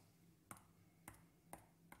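Four faint, sharp clicks of a computer mouse, about half a second apart, pressing buttons on an on-screen calculator.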